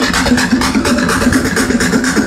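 Electronic dance music played loud over a DJ sound system, with a steady beat and a repeating bassline.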